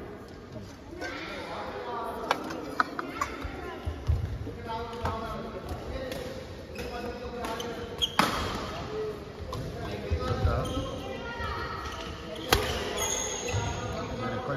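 Badminton rally in a large echoing hall: sharp cracks of rackets striking a shuttlecock, several at irregular intervals with the loudest about eight and twelve and a half seconds in, and the dull thuds of players' footfalls on the court floor.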